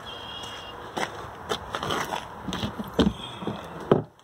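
Footsteps on pavement and scattered clicks and knocks, ending with a sharp click near the end as an RV's exterior storage compartment door is unlatched and swung open.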